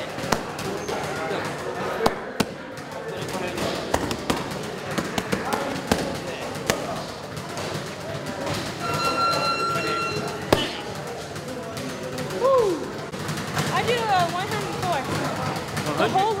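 Boxing gloves smacking focus mitts in a string of sharp punches over gym chatter. A steady electronic beep sounds for about a second around the middle.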